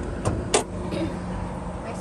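Honda City's 1.5-litre engine idling with a steady low hum, heard from inside the cabin. Two sharp knocks come about a quarter and half a second in.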